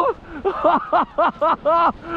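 A man laughing excitedly in a rapid string of short bursts.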